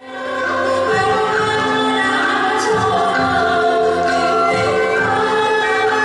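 Two women singing together in traditional Vietnamese style, accompanied by a live traditional ensemble that includes a two-string fiddle, with regular low beats beneath. It fades in quickly at the start.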